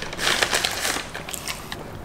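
Close-miked chewing of crunchy food, a dense run of crisp crackles and crunches that is strongest in the first second and thins out toward the end.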